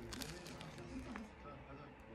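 Someone biting into and chewing bread topped with peanut butter and banana slices, heard as a few faint crisp clicks near the start and about a second in.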